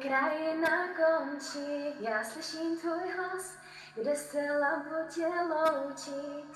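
A young woman singing unaccompanied in Czech, in three slow phrases of long held notes, heard through a video call.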